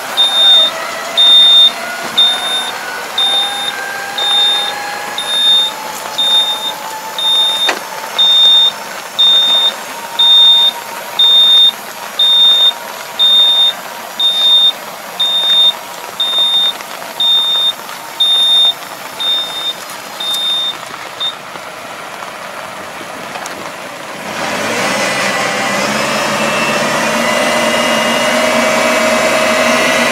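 Tractor-mounted folding paddy harrow rig giving a high electronic warning beep about once a second for around twenty seconds over the tractor's engine. A few seconds after the beeping stops, the engine comes up to a loud, steady working pitch as the harrow starts turning.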